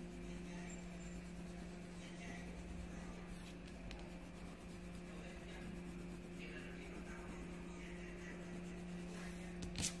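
Colored pencil shading on paper: a faint, uneven scratching over a steady low hum. A few sharp taps near the end.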